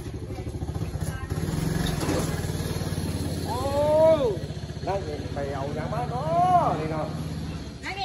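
An engine running steadily at idle, with a low, even pulse, stopping near the end. A person's voice calls out twice over it, in two long rising-then-falling calls.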